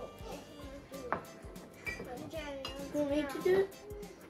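A metal spoon stirring and clinking against a stainless-steel saucepan, with one sharp clink about a second in, over steady background music. A child says "mm-hmm" near the end.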